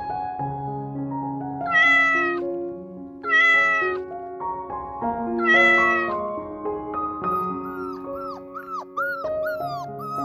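A cat meowing three times, each meow loud and about two-thirds of a second long, over soft background music. From about seven seconds in, a puppy gives a run of short, high whimpers that fall in pitch.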